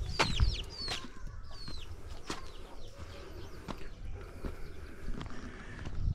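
Chick peeping: several short, high, falling peeps in the first couple of seconds, near a foraging hen. After that there are only a few scattered light knocks.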